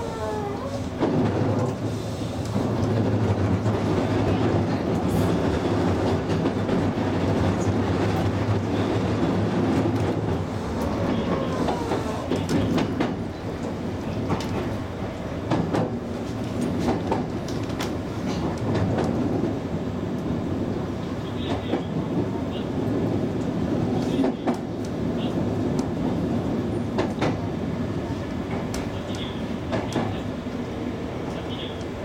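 Railway noise heard in the cab of a stopped electric train: a steady low hum with train clatter. A few gliding tones come in the first second and again about twelve seconds in.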